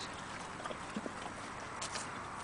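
A horse close by, nosing at a fruit pouch held out to it: a few soft knocks over a steady hiss.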